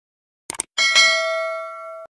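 Two quick mouse clicks, then a bright bell chime struck twice in quick succession and ringing out as it slowly fades: the stock sound effect of a subscribe-button and notification-bell animation.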